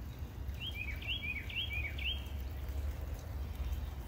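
A songbird singing a short two-note phrase, a higher whistled note dropping to a lower slurred one, four times in quick succession in the first half, over a steady low outdoor rumble.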